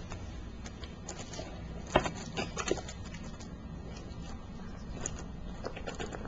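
A few light clicks and knocks from a cake tin being handled as a charlotte is unmoulded, the sharpest tap about two seconds in with several more just after, over a low steady background hum.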